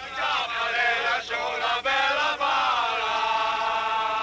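Male voices singing together in a chant-like song, with long held notes that waver in pitch.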